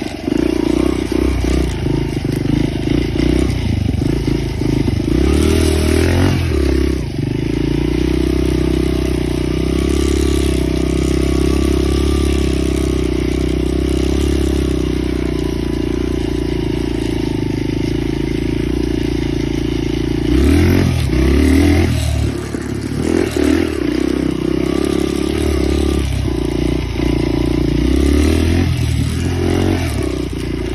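Suzuki dirt bike engine running while riding, holding a steady note that is broken a few times by changes in throttle.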